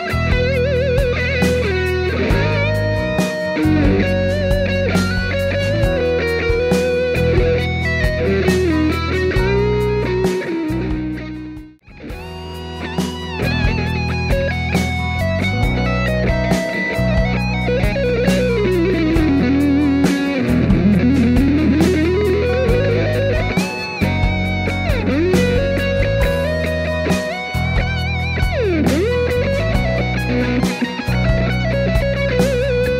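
Overdriven Les Paul-style electric guitar playing a lead melody with string bends and vibrato over a backing track in B. The music drops out for a moment about twelve seconds in, then carries on.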